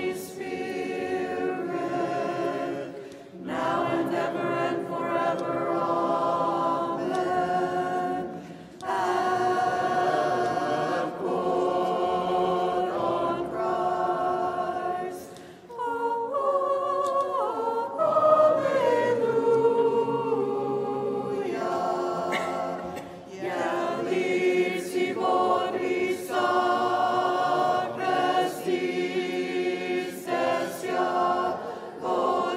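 Congregation and cantor singing an unaccompanied Byzantine chant hymn, in phrases broken by brief pauses for breath.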